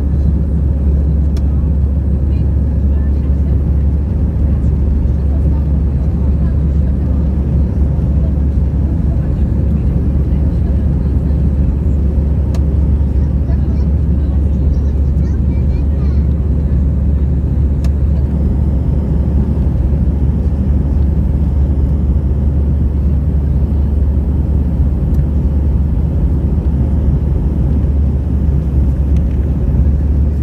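Loud, steady low drone inside an Airbus A319-111's cabin over the wing: the twin CFM56 turbofans at climb power together with the rush of airflow, just after take-off.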